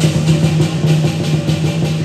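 Chinese lion dance percussion: the big lion drum beating in a fast roll, with cymbals clashing about four times a second.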